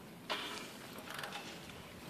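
Faint mechanical clicks and rubbing as a Viking aircraft engine's crankshaft is turned over by hand with a wrench to bring the timing-chain sprocket marks to top dead centre.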